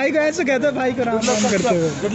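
Men's voices talking over each other, with a short, loud hiss a little past the middle.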